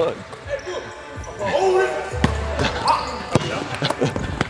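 Basketballs bouncing on a hardwood gym court: several separate thuds spread through the moment, with voices calling out between them.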